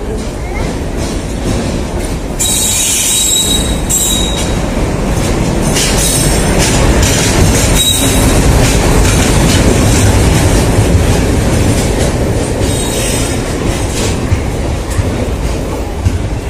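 Indian Railways passenger train rolling past close by, locomotive first and then coaches, with a steady rumble and wheel clatter. High-pitched wheel squeals rise out of it a few times.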